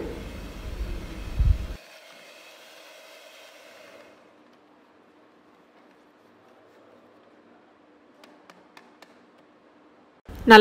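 Electric hand mixer beating thick ice cream batter in a stainless steel bowl, its motor running steadily. The sound drops sharply in loudness about two seconds in and is very faint from about four seconds, with a few light clicks near the end.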